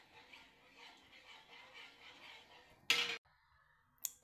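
Faint, soft stirring of thick cornstarch paste in a metal saucepan, then a single brief loud knock about three seconds in.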